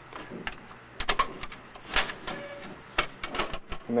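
Plastic clicks and knocks from the multi-purpose tray of an HP LaserJet 4M laser printer as it is lifted and folded shut by hand. A retaining peg on the tray has broken off, so it won't simply swing closed and has to be lifted to shut. The clicks come irregularly, about a dozen, with a cluster near the end.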